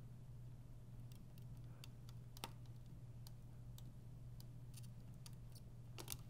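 Faint, scattered small clicks and ticks as a soldering iron tip and fingers work a capacitor lead loose from a circuit board during desoldering, with one slightly louder click about two and a half seconds in, over a steady low hum.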